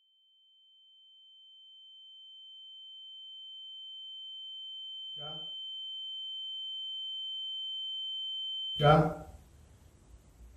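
A single high-pitched steady tone, like ear-ringing, fades in from silence and swells slowly louder for several seconds. Near the end it is cut off abruptly by a sudden loud burst.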